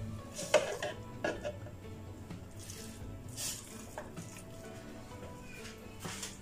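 Silicone spatula scraping raw beef mince off a ceramic plate into a plastic food-chopper bowl, with a few light clinks and scrapes in the first second or so and a soft scrape a little past the middle, over faint background music.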